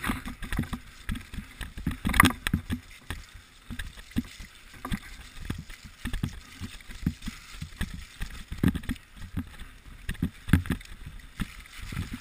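Mountain bike riding fast over a rocky, muddy trail, heard from a camera on the rider: a steady rumble of tyres on dirt with many irregular low thuds and knocks as the wheels hit stones, and one sharp clack about two seconds in.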